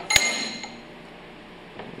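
A single sharp metallic clink with a brief ring, from the metal body of a twin piston pump being turned over by hand.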